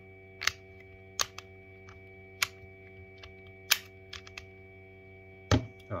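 Pieces of a magnetic physical 2^4 hypercube puzzle clicking as they are pulled apart and snapped back together during a gyro move: about eight sharp, irregular clicks over a steady hum.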